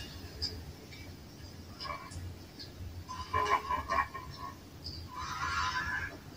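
A man's recorded voice played back at slowed speed, in short drawn-out phrases with pauses between them, over a steady low hum.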